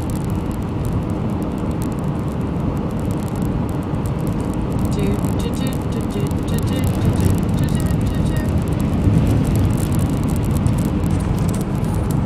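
Steady low rumble of road and engine noise inside a moving car's cabin at road speed, slightly louder in the second half.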